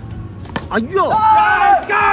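A single sharp crack about half a second in, a cricket bat striking the ball, followed by voices shouting over background music.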